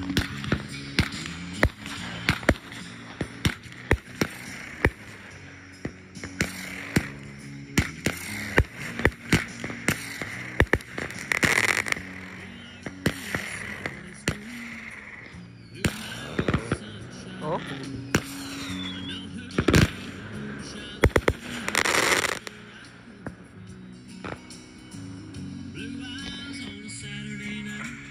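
Consumer fireworks firing in a long, irregular run of sharp bangs, several a second at their busiest, with two longer noisy bursts about a third and three quarters of the way through. Background music plays underneath.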